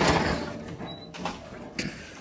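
Old wooden door with glass panes pushed open by hand: a sudden loud noise as it swings, fading over about a second, then a short knock near the end.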